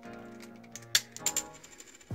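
Sharp plastic click about a second in, then a few quicker small clicks, as a center cap is popped off the X-Man Tornado V3 M magnetic speed cube, over steady background music.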